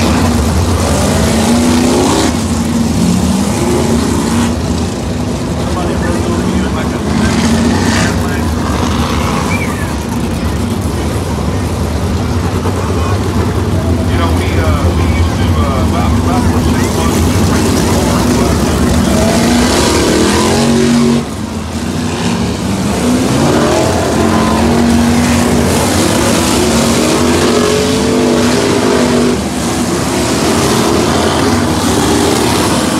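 Winged sprint cars' V8 engines running laps on a dirt oval. Several engine notes rise and fall in pitch as the cars accelerate off the turns and pass.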